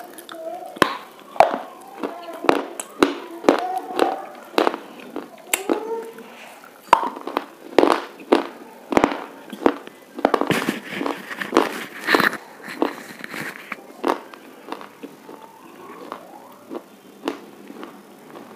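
Close-up crunching of a hard white bar being bitten and chewed: a string of sharp snaps and cracks, thickening into dense crackling chews a little past the middle, then thinning out.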